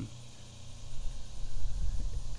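Low, uneven outdoor rumble that grows louder in the second half.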